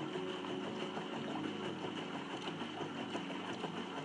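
A small motor running steadily with a fast, even chatter. It is heard as part of a film's soundtrack played through a hall's speakers.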